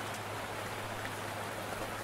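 Steady rain-like hiss with a low hum and a few faint ticks: the noise bed of a lo-fi track, with no music left. The sound cuts off at the very end.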